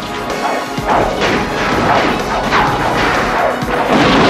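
Action-film soundtrack: a series of loud crashes and impacts starting about a second in, each with a short echoing tail, over dramatic music.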